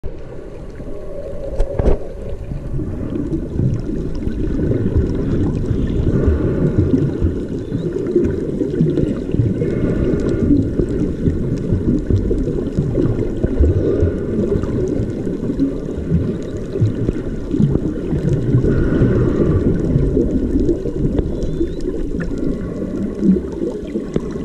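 Underwater ambient noise picked up by a submerged camera: a steady, muffled low rumble of moving water, with faint bubbling now and then and a single click about two seconds in.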